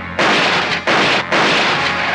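Three loud gunshots dubbed onto a TV action scene, about half a second apart, each with a long, ringing tail.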